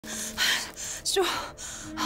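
A woman gasps, a sharp breathy intake of air, then speaks one short word.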